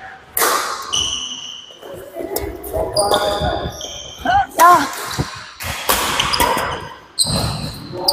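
Badminton doubles rally on an indoor wooden court: rackets hitting the shuttlecock and feet thumping on the floor in a string of sharp hits, with short high squeaks from sneakers sliding on the court.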